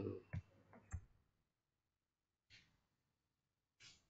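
Faint computer keyboard clicks, two distinct key presses in the first second as digits are typed into code, then near silence broken by a couple of soft breath-like hisses.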